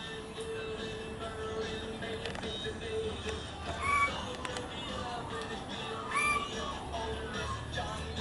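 Pied butcherbirds giving a few short, fluted whistled notes that rise and fall, about four, six and seven and a half seconds in, over a faint steady hum.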